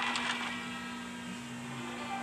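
Cartoon soundtrack between lines of dialogue: sustained, slowly fading background-music tones over a steady low hum.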